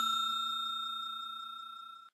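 Bell-like chime sound effect of a subscribe-button animation ringing out: a clear high ring with a lower hum beneath it, fading steadily away and stopping near the end.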